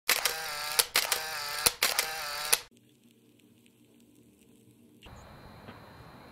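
Camera shutter and flash sound, three times in quick succession about a second apart, each a buzzing whir ending in a sharp click, then near quiet.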